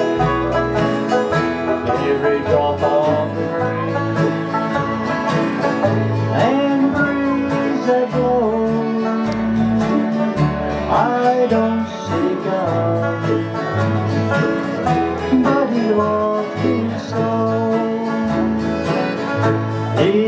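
Live bluegrass band playing, with banjo and acoustic guitar picking over low bass notes and a sliding melody line.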